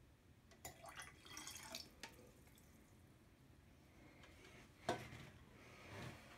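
Faint trickle and drips of a small amount of liquid poured into a glass of red cabbage water, about a second in, then a single soft knock near the end.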